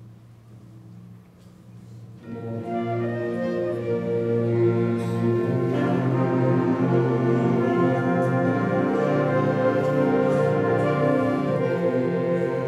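School concert band starting a piece: soft low sustained notes, then the rest of the band comes in about two seconds in, swelling over the next couple of seconds to full sustained chords.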